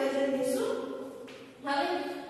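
A woman's voice singing a line of Gujarati verse in long held notes, chanting it to its metre. There is a short break about one and a half seconds in before the next phrase.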